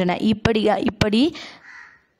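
A woman's voice speaking in Tamil in a lecture, trailing off into a breath near the end.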